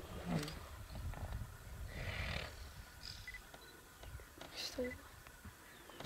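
Hippos at the water's edge giving two short low grunts, one near the start and one near the end, with a breathy snort in between; quiet.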